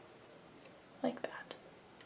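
Quiet room tone with a brief, soft murmur from a voice about a second in, lasting about half a second.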